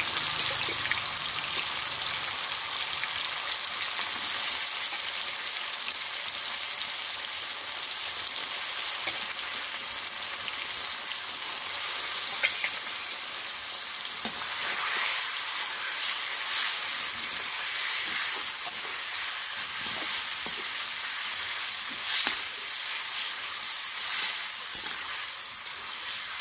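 Marinated chicken pieces sizzling steadily in hot mustard oil in an iron kadai. The metal spatula clicks and scrapes against the pan a few times as the meat is stirred.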